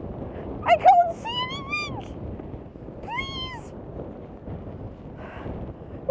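A person's high-pitched wordless cries, three rising-and-falling wails in the first four seconds, over a steady rush of wind on the microphone.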